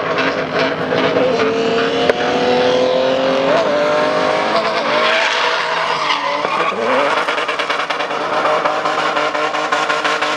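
Toyota Land Cruiser 100-series SUV drifting with its engine held at high revs and its rear tyres spinning and skidding. The engine note dips briefly about six and a half seconds in and climbs again, and turns choppy near the end.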